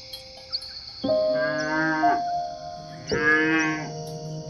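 Cattle mooing twice, one call about a second in and another about three seconds in, each lasting about a second, over steady background music.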